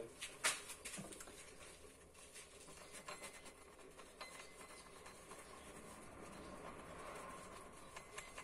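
Faint handling noises of gloved hands turning a metal shell casing, with one sharp click about half a second in. The bench polisher is not running.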